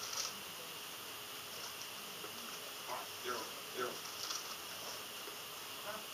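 Quiet room tone with a steady, faint high-pitched whine and hiss, and a brief soft spoken "yeah" about three seconds in.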